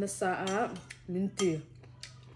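A woman talking, with a metal spoon clinking and scraping against a ceramic bowl; one short clink comes a little under a second in.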